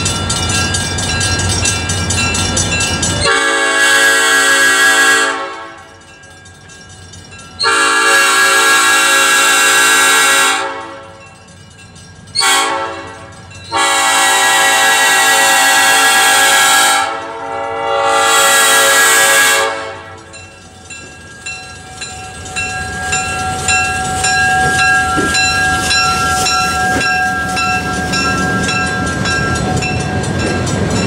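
Southern Pacific EMD E9A diesel locomotive No. 6051 sounds its air horn for a grade crossing: two long blasts, a short one, then two more long ones. After that, its engines and wheels run as it draws up and passes close by, louder toward the end. A crossing bell rings steadily before and after the horn.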